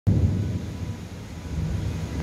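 Gusty storm wind, heard as a low rumble of wind buffeting the microphone, loudest at the very start, easing a little mid-way and building again.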